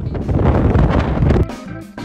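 Wind buffeting the microphone in a loud, uneven rumble, likely over the rush of a large waterfall, cut off abruptly about a second and a half in. Background music with held notes and drum hits takes over.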